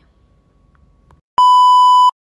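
Faint room tone, then about one and a half seconds in a loud, steady test-tone beep, the kind played over TV colour bars.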